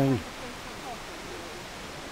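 Steady rush of the River Bran's flowing water, an even hiss with no rhythm.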